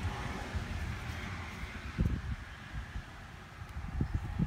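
Chevrolet 454 big-block V8 with a Quadrajet carburettor idling, a low steady rumble, with a single thump about two seconds in.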